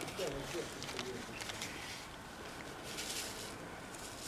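Quiet outdoor ambience: a faint, even background hiss, with a few faint low sounds in the first second.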